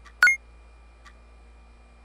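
A single short, loud electronic blip about a quarter second in, stepping up between two high tones, over a low steady hum.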